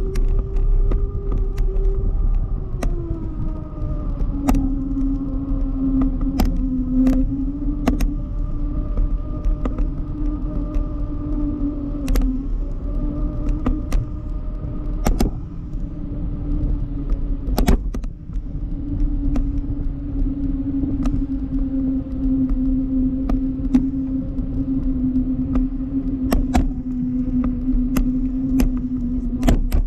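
Wind rumbling on the microphone of a camera rigged to a parasail in flight, with a steady humming tone that drops in pitch about three seconds in and then holds. Scattered sharp clicks from the rig.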